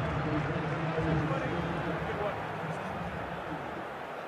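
Faint, indistinct voices over a steady background hiss, with no clear words.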